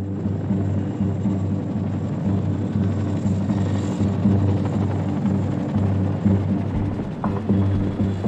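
Boeing CH-47 Chinook tandem-rotor military helicopter flying in low, its rotors beating steadily and growing slightly louder as it approaches.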